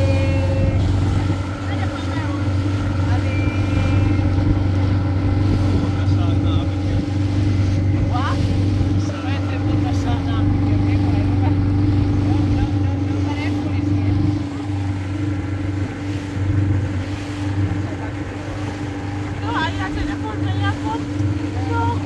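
A small motorboat's engine running steadily under way, a constant low drone with a few steady higher tones, over the rush of water and wind.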